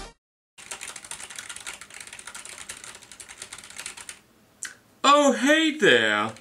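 Rapid typing on a computer keyboard: a steady patter of key clicks lasting about three and a half seconds. A man's voice comes in about five seconds in and is the loudest sound.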